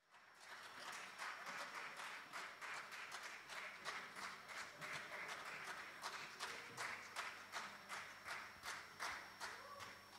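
Audience applause that starts abruptly, the claps falling into a steady beat of about two to three a second.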